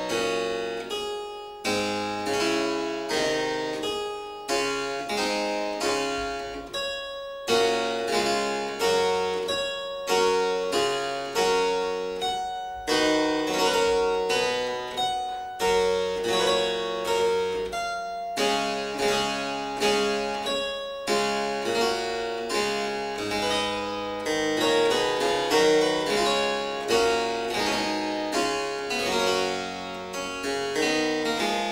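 Solo harpsichord playing a piece, its plucked notes starting sharply and fading quickly, with faster runs of notes in the last few seconds.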